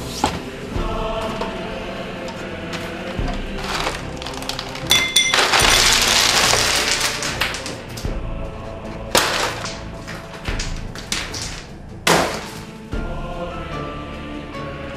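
Ice cubes clattering out of a freezer's ice-maker bin onto a countertop, a dense rattle of about two seconds starting about five seconds in, with a few sharp knocks later, over background music.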